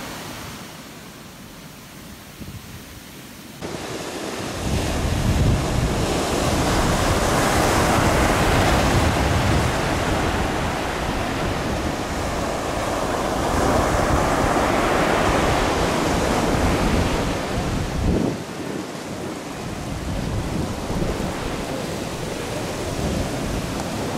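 Sea waves breaking and washing up a sandy beach, a steady surf that swells and eases with each wave. The first few seconds are softer; about four seconds in it turns louder, with wind rumbling on the microphone.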